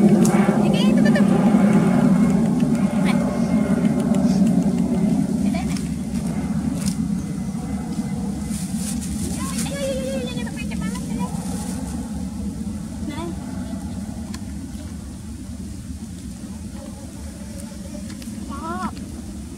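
A motor vehicle's engine droning steadily, loudest at first and fading slowly away, with a few short, higher-pitched calls over it.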